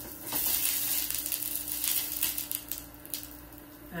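Breakfast sausages sizzling and crackling in a hot grill pan, swelling about a third of a second in and easing off after a couple of seconds.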